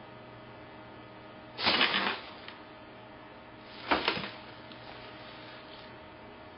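Two short bursts of crinkling plastic, each about half a second long, one about a second and a half in and one about four seconds in: a black plastic garbage-bag costume rustling as the wearer moves.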